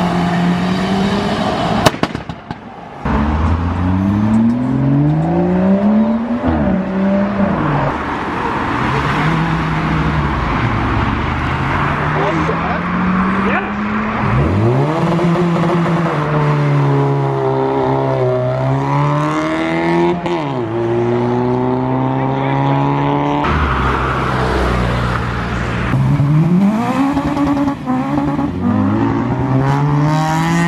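Modified cars accelerating away one after another, each engine note climbing through the revs and falling off as the car passes, then the next one following. A single sharp bang about two seconds in, with crowd voices underneath.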